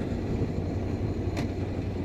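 Ducati Scrambler's air-cooled L-twin running at a steady cruise, mixed with wind and road noise on the rider's microphone. There is a single brief click about one and a half seconds in.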